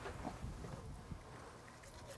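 Faint, soft low thumps of a large striped bass being shifted and handled on a cleaning table, mostly in the first second.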